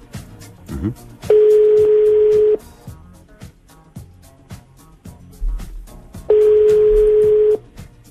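Telephone ringback tone heard down a phone line: two long, steady beeps about five seconds apart, each a little over a second long, the sign that the called phone is ringing and not yet answered. Background music with a steady beat runs underneath.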